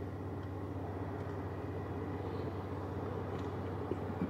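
Steady low hum inside the cabin of a 2021 Toyota Corolla, with its climate-control fan running.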